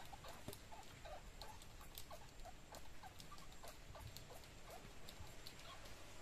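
Quiet river ambience while fishing from a boat: faint, irregular small clicks and brief tiny squeaks over a soft steady background, with no speech.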